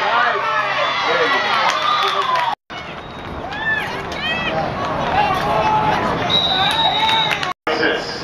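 Spectators at a youth football game shouting and cheering over each other, with a short steady whistle blast near the end. The sound drops out completely for a moment twice.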